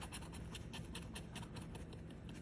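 A coin scraping the coating off a scratch-off lottery ticket: quick, faint, rhythmic scratching strokes, about five a second.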